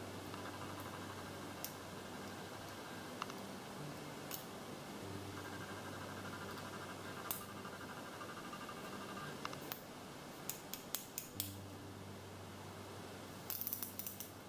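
Small plastic clicks and taps from a Puregon injection pen being handled as a new cartridge is loaded, with a cluster of clicks past the middle and a rapid run of clicks near the end. A faint steady hum sits underneath.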